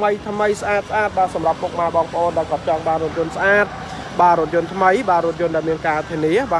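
A person talking continuously, with a steady low hum underneath.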